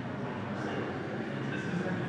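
Indistinct background chatter of several people talking over a steady, even room noise.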